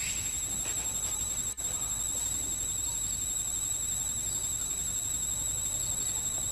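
Steady high-pitched insect drone: one constant tone with a fainter one an octave above, over low background noise. It drops out very briefly about a second and a half in.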